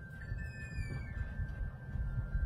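A short, faint falling whistle about half a second in, heard over a steady low rumble.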